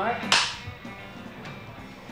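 A film clapperboard's hinged sticks snapped shut once, a single sharp clap about a third of a second in, marking the start of a take. Faint music continues underneath.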